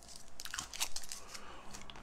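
Faint crinkling and light clicking, a scatter of small irregular ticks, like something being handled close to the microphone.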